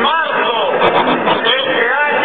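Speech amplified over a public address system, ringing out over the noise of a large outdoor crowd.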